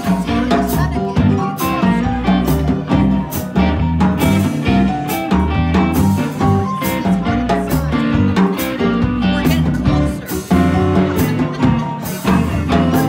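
Live blues band with electric guitar, electric bass, keyboard and drum kit playing an instrumental break, the drums keeping a steady beat.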